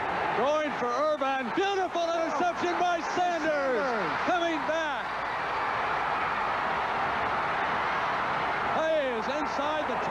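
A man's voice, the broadcast commentary, over the steady din of a stadium crowd. The voice stops about five seconds in, leaving only the crowd noise, and returns near the end.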